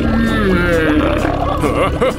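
A long, loud belch, drawn out for over a second with its pitch slowly falling: trapped gas being let out.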